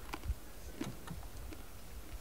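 A few faint, short mouth clicks of someone chewing a dried spirulina strand, over a steady low rumble.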